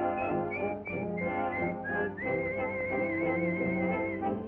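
Orchestral cartoon score with a whistled melody on top: a few short whistled notes, then a long held note with a steady vibrato from about two seconds in.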